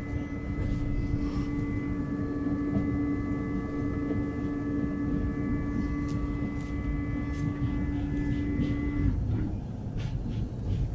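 Electric passenger train heard from inside the carriage: a steady low rumble of the train running, with a steady electric hum over it that stops about nine seconds in.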